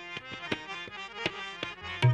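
Harmonium playing held reed notes, with sharp tabla strokes struck over them every quarter to half second, in Hindustani classical music.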